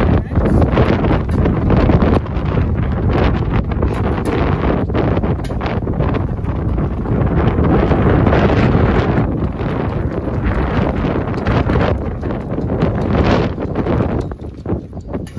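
Strong wind gusting across the microphone: a loud, steady rumble with rushing gusts that eases near the end.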